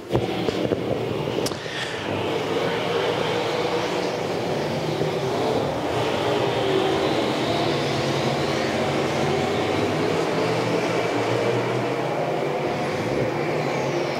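A pack of modified street dirt-track race cars running hard around the oval. Several engines at high revs blend into one steady din whose pitches rise and fall slightly.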